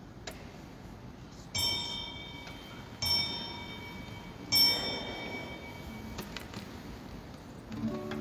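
Altar bell rung three times, about a second and a half apart, each strike ringing on with a cluster of bright tones; the third strike is the loudest.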